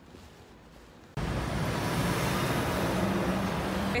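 Road traffic on a city street: a steady rush and rumble of passing vehicles that starts abruptly about a second in, after a quiet moment.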